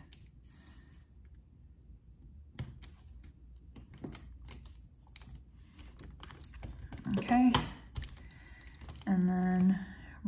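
Scattered light clicks and taps of a plastic squeegee and fingertips on a cutting mat and a rhinestone template, at an uneven pace like slow typing. A brief vocal sound comes about seven seconds in, and a held vocal note near the end.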